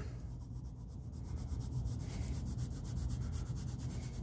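Blue colored pencil shading on paper: a soft, steady scratching made of quick back-and-forth strokes.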